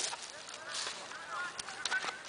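Several short honking bird calls, each rising and falling in pitch, with a couple of faint clicks near the end.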